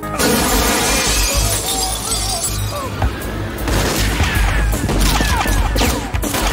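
Action-film soundtrack: a loud shattering crash in the first second or so, with loud background music running through.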